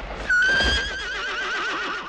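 A horse whinnying: one long neigh starting about a third of a second in, its pitch wavering more and more as it goes on, just after a burst of gunfire.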